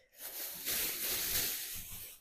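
Clear plastic bag rustling and crinkling as it is pulled up and handled, a steady crackly hiss that builds about a quarter second in and fades near the end.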